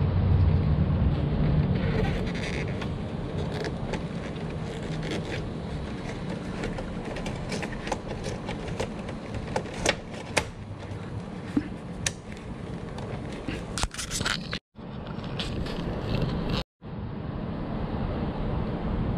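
Scattered clicks and scrapes from handling a plastic circuit breaker and its wires inside a metal breaker panel, over a steady low rumble. The sound cuts out twice, briefly, near the end.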